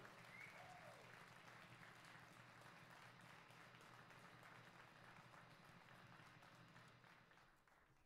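Faint audience applause, very quiet and fading out near the end.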